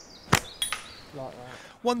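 A single sharp snap of a catapult (slingshot) being shot, about a third of a second in, with faint lighter ticks just after.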